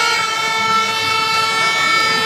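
A horn sounding one long, steady held note.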